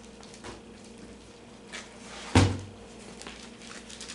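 Books being handled: a few faint paper rustles, and a single dull thump a little over two seconds in.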